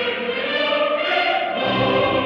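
Opera chorus singing with full orchestra, in a 1938 mono recording with a dull, muffled top end.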